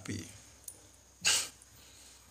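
A pause in a man's speech, broken once about a second in by a short, sharp breath noise.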